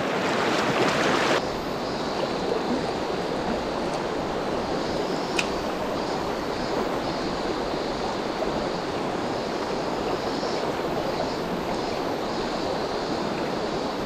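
Steady rushing of a shallow mountain stream running over rocks. In the first second or so there is louder splashing from the landing net in the water as a trout is let go, and a single sharp click about five seconds in.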